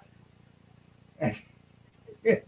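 A man's brief laugh, one short voiced sound a little over a second in, with near quiet around it.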